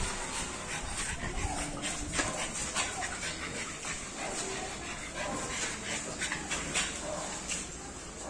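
French bulldog panting close by, with a few faint clicks.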